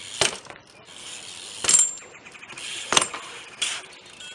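BMX bike knocking and clanking against concrete ledges and ground as the rider hops and lands: four sharp metallic knocks, one with a brief high metallic ring.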